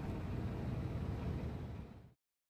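Steady low rumble of outdoor harbour ambience, fading out right at the end.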